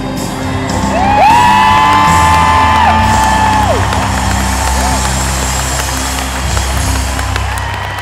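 Live band holding a final chord, with loud whoops and cheers from the concert crowd over it; the band stops near the end.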